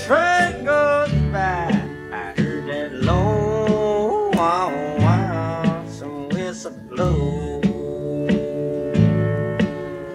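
Country song with acoustic guitar: bass and rhythm strums under a sliding, bending lead melody that settles into a long held note about halfway through.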